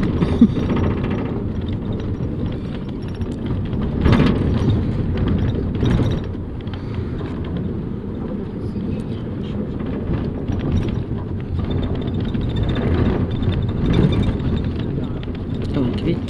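Inside a moving bus: steady engine and road rumble as it drives over a rough, potholed road, with a couple of harder jolts rattling the cabin.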